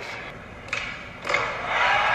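Skateboard trick on a concrete floor: a sharp pop of the tail about two-thirds of a second in and the board landing with a louder smack about half a second later, followed by crowd noise rising.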